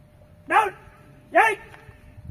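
A dog barking twice, two short single barks about a second apart.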